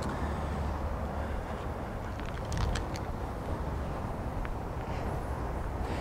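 Steady low outdoor rumble of background noise, with a few faint clicks about two and a half seconds in.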